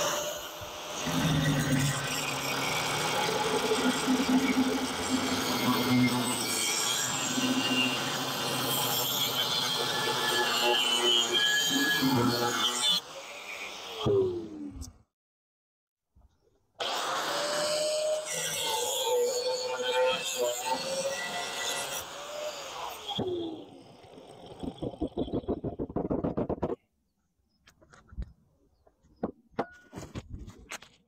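Makita angle grinder cutting and grinding steel plate in two long runs. Each run ends with a falling whine as the trigger is released and the disc spins down. A few faint clicks follow near the end.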